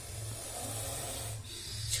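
Baby Indian cobra hissing with its hood spread in defensive display, breathy and fairly loud, with a sharper, louder hiss near the end. A low steady hum runs underneath.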